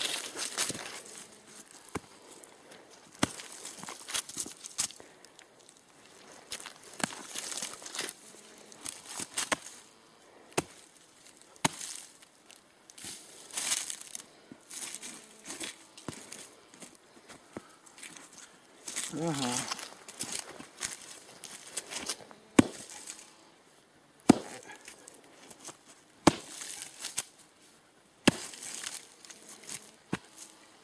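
Irregular chopping strikes of a long-handled hand tool into a packed dirt path, cutting out tree roots, with scraping and rustling of soil and leaves between the blows.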